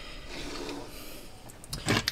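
A person's soft breathing close to the microphone, with a short, sharper breath just before the end.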